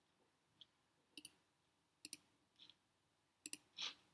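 Computer mouse button clicks: three sharp double clicks about a second apart, then a softer click near the end.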